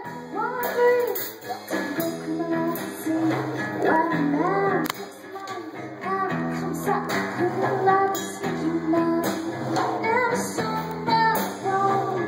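Live rock band: a woman's lead vocal over a strummed acoustic guitar and a Yamaha drum kit with steady drum and cymbal hits.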